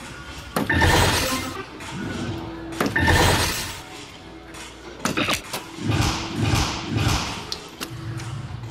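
Three darts striking a soft-tip electronic dartboard about two seconds apart, each hit setting off the machine's electronic scoring sound effect; the first two, triple 18s, are the loudest, and the third, a single 18, is somewhat softer.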